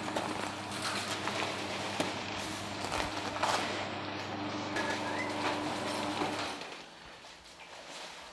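Electric garage door opener raising a sectional overhead door: a steady motor hum with the rattle of the door panels running along their tracks, which stops about six and a half seconds in as the door reaches the top.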